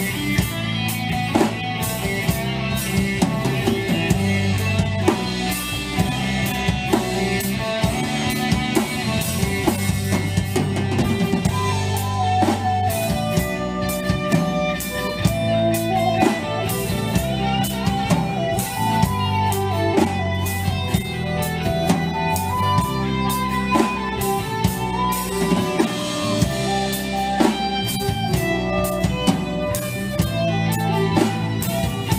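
A live band playing an instrumental passage with acoustic and electric guitars, bass guitar and a drum kit over a steady beat. A wavering lead melody runs on top, most prominent in the middle of the passage.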